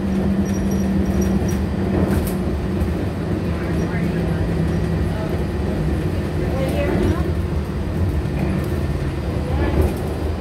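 Walt Disney World monorail in motion, heard from inside the car: a continuous rumble with a steady motor hum that drops in pitch in steps over several seconds.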